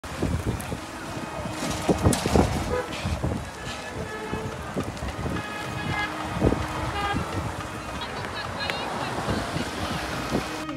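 Roadside street traffic: scooters and small vehicles passing, with background voices and a few short horn toots.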